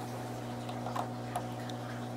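Steady hum of bench RF test equipment, an HP network analyzer among it, with a few faint short clicks spread through it as the front panel is handled.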